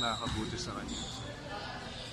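Basketballs bouncing on a gym court in the background during a team practice, with scattered knocks and faint voices around them.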